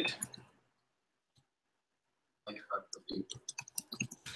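Computer keyboard typing: a quick run of key clicks starting about two and a half seconds in, after a short silence.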